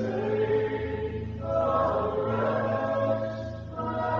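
A slow hymn sung by voices holding long notes over sustained low accompaniment. The chord changes about a second and a half in and again near the end.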